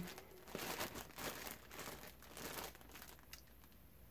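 Clear plastic bag crinkling as it is handled and turned over, in faint irregular rustles that die away about three seconds in.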